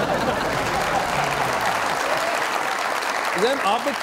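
Studio audience applauding, steady throughout and giving way to a man's voice near the end.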